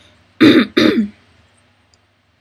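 Someone clearing their throat: two short, loud rasps in quick succession about half a second in.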